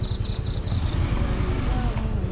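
Motorcycle engine running at low speed with a steady low rumble. A high, rapidly pulsing chirp runs alongside it and stops about a second in.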